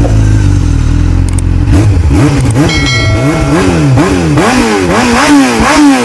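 Motorcycle engine running steadily, then revved over and over from about two seconds in, its pitch rising and falling about twice a second.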